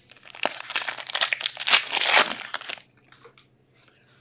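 Foil wrapper of an Upper Deck Trilogy hockey card pack crinkling in the hands as the pack is opened, for almost three seconds, then stops.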